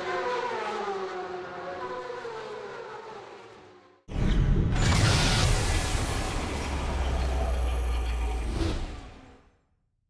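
Closing logo sound effects. A pitched sound slides slowly downward and fades out. Then a sudden loud hit with a deep rumble comes in, holds for about five seconds and fades away.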